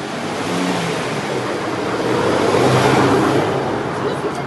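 A motor vehicle passing close by: its engine and road noise swell to a peak about three seconds in, then begin to fade.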